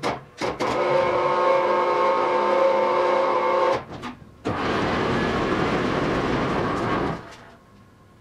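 Electric overhead hoist lifting a car body shell off a trailer. After a few short clicks of the controls, the hoist motor runs with a steady whine for about three seconds, stops briefly, then runs again with a rougher, noisier sound for about three seconds and stops.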